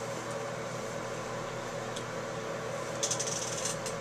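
A plastic comb drawn through synthetic wig hair, a brief, quick scratchy rustle near the end, over a steady room hum.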